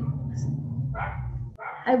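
A pause in a woman's lecture, filled by a low steady hum that cuts off suddenly about a second and a half in. A brief voiced sound comes about a second in, and her speech resumes near the end.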